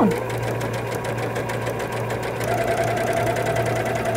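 Electric sewing machine stitching a hem at a steady speed, a fast even run of needle strokes over a low motor hum; a steady higher whine joins about halfway through.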